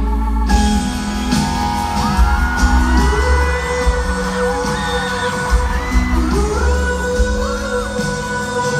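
Live pop-rock band playing a slow song in an arena, recorded on a phone. A heavy, booming low end sits under a lead melody that glides between held notes.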